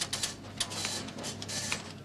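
Quick, irregular clicking of keys on a computer terminal keyboard as an operator keys in data, over a low steady hum.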